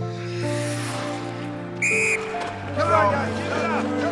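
Film score of sustained chords, cut by one short referee's whistle blast about halfway through, followed by brief shouting voices.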